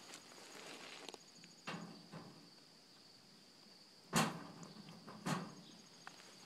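Crickets chirping steadily, with a few handling knocks on the wire cage trap: two sharp ones about four and five seconds in, and fainter ones earlier.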